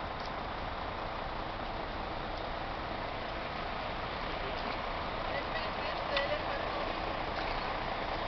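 Steady outdoor ambient noise, with faint distant voices about five to six seconds in.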